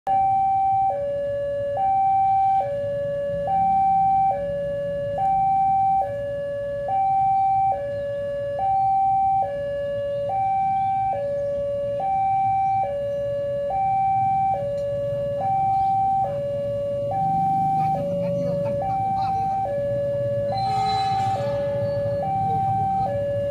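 Railway level-crossing warning alarm sounding a steady two-tone call, alternating between a higher and a lower tone, each held just under a second. It is the crossing's signal that a train is approaching.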